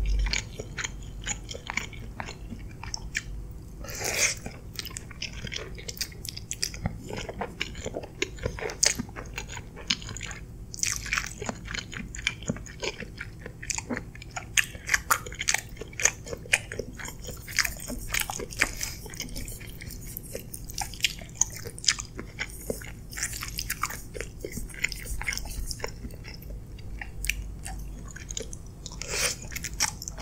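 Close-miked chewing and biting of a mouthful of creamy chicken pasta: many short, sharp mouth clicks and smacks at an irregular pace.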